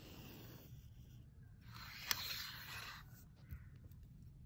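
Pen drawing a line across paper along a ruler, a faint scratching, then a louder rubbing as the paper and ruler are shifted on the desk, with a single click about two seconds in.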